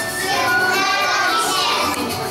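A group of preschool children singing together, with backing music.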